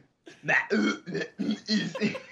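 Men laughing in a run of short voiced bursts, starting just after a brief pause.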